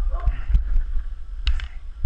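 Practice sticks clacking together once, a sharp crack about one and a half seconds in, after a spoken "bang", over a steady low rumble.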